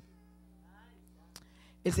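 A pause in speech over a handheld microphone: a low, steady hum from the sound system, a faint wavering voice in the background and a single click. A woman's amplified voice resumes near the end.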